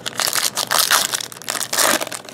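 Foil trading-card pack wrapper being torn open and crumpled by hand: a run of crackly crinkling bursts, loudest about a second in and again near the end.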